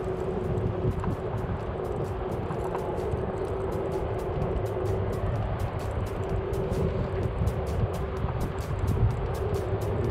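Electric scooter riding uphill under load on its rear hub motor alone, a steady whine over road and wind rumble. Background music with a quick, even hi-hat beat plays over it.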